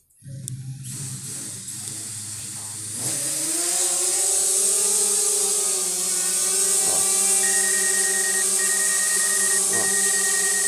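DJI Spark quadcopter's motors spinning up and lifting it off: a low hum with propeller hiss, then from about three seconds in a rising whine that settles into a steady hover. From about seven seconds in, a high beep repeats over it: the obstacle-avoidance sensor warning of a wall about a metre ahead.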